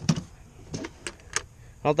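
A metal ammo can's latch being worked and its lid swung open: several sharp clicks and clanks, spread over about two seconds.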